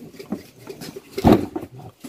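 A knife scraping the peel off cassava roots by hand, heard as faint scattered scrapes and clicks. There is one louder, short, low sound about a second and a quarter in.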